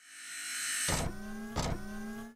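Logo sting sound effects: a whoosh swelling up over about a second, then two sharp hits about two thirds of a second apart over a sustained synthesized drone that rises slightly in pitch.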